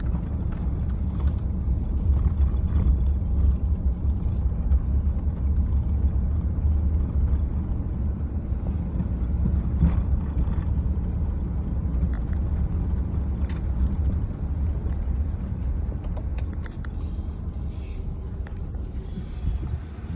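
Steady low rumble of a vehicle driving along a paved road, heard from inside the cab: engine and tyre noise.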